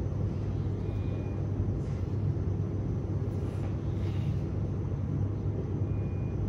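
Steady low rumbling room tone with a hum, with a faint short high beep about a second in and another near the end.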